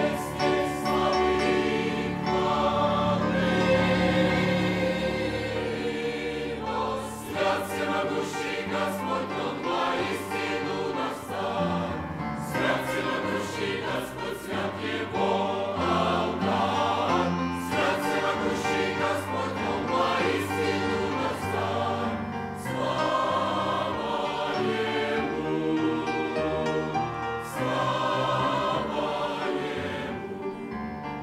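Mixed church choir of men's and women's voices singing a hymn in parts, accompanied by a grand piano.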